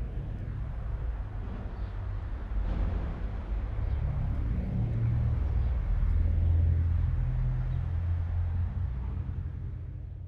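Outdoor ambience dominated by a low rumble that builds to its loudest a little past the middle and eases off near the end.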